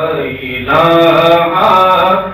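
A man singing an Islamic devotional song unaccompanied, holding long, drawn-out notes with a short break just after the start.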